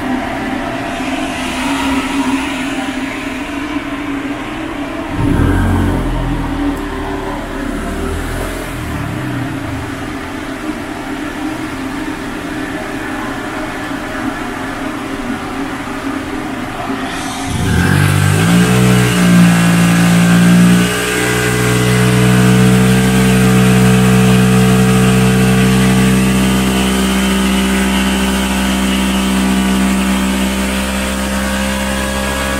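Honda Click 125 scooter's engine running on a chassis dyno. It runs steadily, with a brief louder low surge about five seconds in. Past halfway it revs up with a rising pitch and then holds a steady, louder, higher speed to the end.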